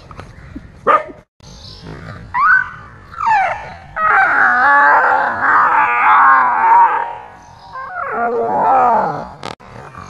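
A dog barking at a stuffed toy tiger and attacking it, loudest in a long run of barking from about four to seven seconds in.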